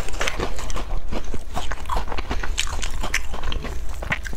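Biting and chewing into a large round cookie with a hard glazed crust, a close, rapid run of crisp cracks and crunches.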